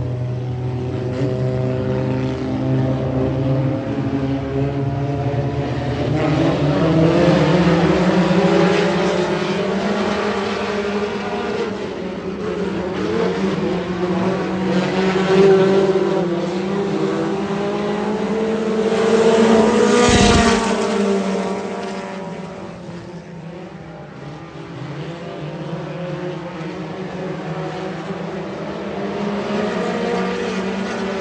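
Several dirt-track stock car engines racing around the oval, their pitch rising and falling as they go through the turns and down the straights. The sound swells as the cars pass close, loudest about twenty seconds in.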